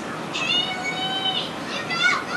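A high-pitched animal call, drawn out for about a second, followed near the end by a shorter call that falls in pitch.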